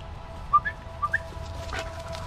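Two short rising two-note whistled chirps, about half a second apart, over a low rumble.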